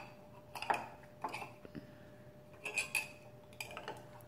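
A metal spoon scraping and clinking against the inside of a glass jar while scooping jelly: a handful of light, scattered clinks at uneven intervals.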